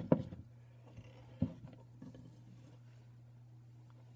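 Handling of a hinged metal worm mold as it is opened: a sharp click right at the start and a softer one about a second and a half in, then little but a steady low hum.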